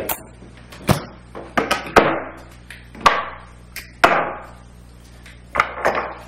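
Irregular hard knocks and clicks, about eight in all, some ringing briefly: a plywood-and-glass contact print frame being lifted out of a UV exposure box and its clamps undone.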